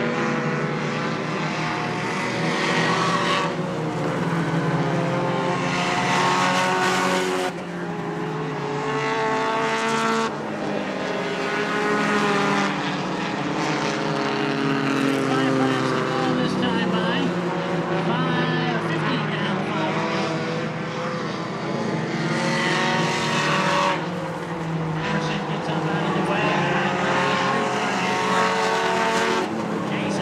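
Several stock race cars running laps on a paved short oval, their engines revving up and down as they pass through the turns and along the straight, with the sound of one car swelling and fading under the others.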